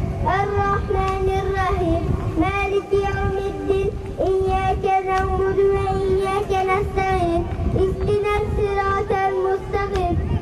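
A young boy singing unaccompanied into a handheld microphone. The melodic vocal line has long held notes around one steady pitch, joined by short ornamented turns, over a low background rumble.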